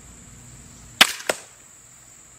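TenPoint Viper S400 crossbow firing, a single sharp crack about a second in, followed about a third of a second later by a weaker thwack of the bolt striking the deer target at 30 yards.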